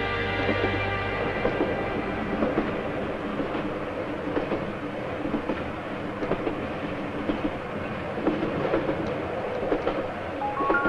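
Moving train carriage from inside: a steady rumble with irregular rattling and clicking from the wheels and car body.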